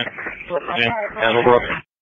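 Fire department two-way radio traffic: a voice calling over the radio, thin and band-limited, cutting off abruptly as the transmission ends near the end.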